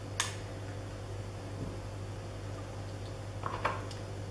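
Small objects being handled: one sharp click just after the start and faint rustling and tapping near the end, over a steady low hum.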